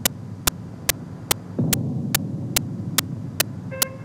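Low hum and rumble from an old film or tape soundtrack, with a sharp click about two and a half times a second. The clicks are evenly spaced and keep going under the narration, so they are a fault in the transfer and not a sound of the scene. The rumble grows louder about one and a half seconds in.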